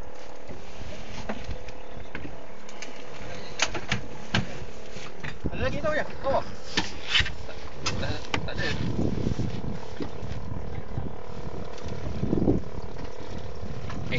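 A small fishing boat's engine running with a steady drone over sea and wind noise, with a few sharp clicks scattered through it.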